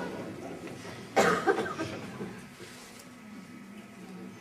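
A person coughing: one sharp cough about a second in, followed by a couple of smaller ones, then quiet room sound.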